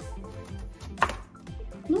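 A single sharp chop about a second in: a knife cutting through an eggplant onto a plastic cutting board, over background music with a steady beat.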